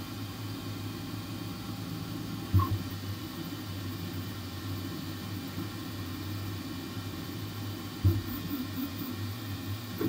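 Flsun V400 delta 3D printer printing: a steady hum of its motors and fans as the print head moves, broken by two short knocks, one about two and a half seconds in and one about eight seconds in.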